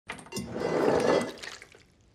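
Wet splattering into a ceramic chamber pot, a noisy burst that swells and fades out about a second and a half in.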